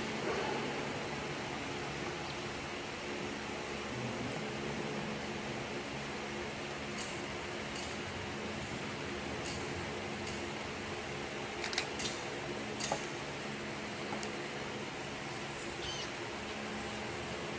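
A censer (thurible) being swung: several faint metallic clicks of its chains and lid in the second half, over a steady low hum of room noise.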